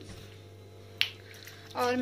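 A single sharp click about a second in, over a low steady hum; a woman's voice begins near the end.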